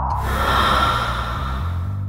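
A hissing whoosh sound effect that starts suddenly and fades away over about two seconds, over background music with a low bass line.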